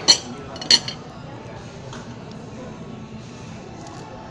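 Two sharp clinks of cutlery against a plate within the first second, followed by a steady low background of restaurant noise.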